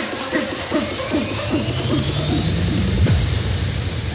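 Hardstyle DJ set music in a build-up: a short falling tone repeats about every half second under a steadily rising high sweep and a rising low tone, ending in a heavy low hit about three seconds in.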